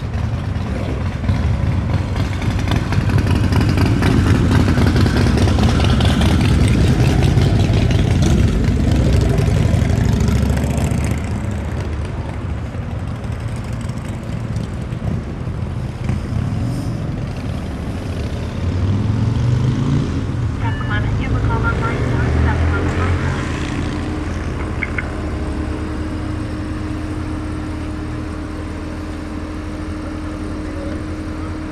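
Supercharged 6.2-litre LT4 V8 of a 2015 Chevrolet Corvette Z06 running as the car moves slowly at low speed, loudest for the first ten seconds or so. The sound then drops to a lower, steadier drone through the last third.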